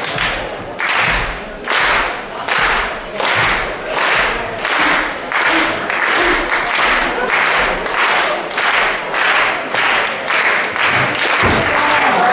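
Audience clapping in unison to a steady beat, about one and a half claps a second and slowly speeding up, each clap with a low thud under it.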